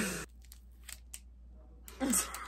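A few faint, sharp clicks from the plastic Pullip doll and its wig as the wig is pulled off the doll's head.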